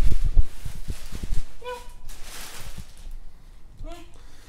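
Black plastic garbage bag rustling and crinkling as clothes are pulled out of it, with a run of low thumps in the first second and a half and a short vocal sound near the middle.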